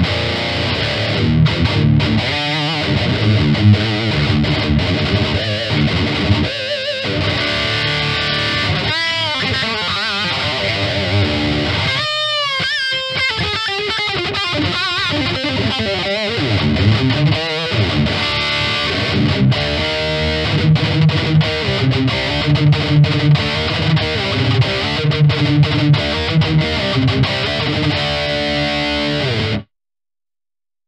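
Heavily distorted electric guitar riffing through a Neural Amp Modeler capture of an Engl Savage 120 KT88 amp, boosted by a Tube Screamer-style NA 808 pedal, captured through a Mesa Oversize cab with Vintage 30 speakers and an SM57. About twelve seconds in there is a stretch of wavering, bent notes, and the playing cuts off just before the end.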